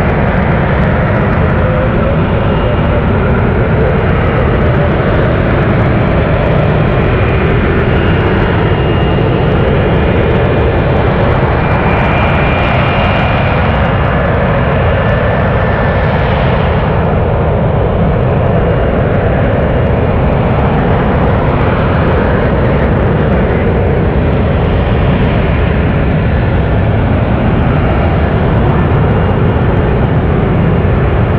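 F-35B jet running in short-takeoff/vertical-landing mode, its lift-fan door open, flying a slow low approach with gear down: a loud, steady jet roar with a faint high whine that comes and goes in the middle.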